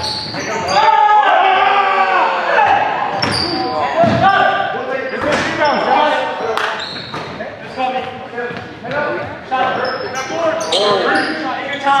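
Basketball game play on a hardwood gym floor: the ball bouncing and being dribbled, sneakers squeaking, and players shouting, in a large hall. Someone calls "Time" at the very end.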